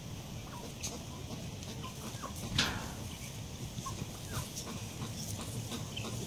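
Chickens clucking in short, scattered calls over a faint steady background, with one louder call about two and a half seconds in.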